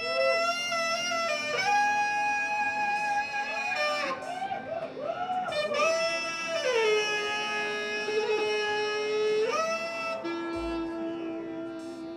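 Alto saxophone playing a slow melodic line over a steady modular-synthesizer drone: long held notes, a stretch of quick bends and slides in the middle, then a long low note before it climbs again. A lower drone note comes in near the end.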